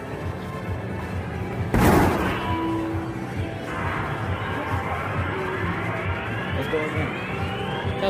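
A hard kick strikes the punching bag of an arcade boxing-strength machine about two seconds in, a single loud thud. Then the machine's electronic sound effect plays rising tones as the score counts up, over arcade music.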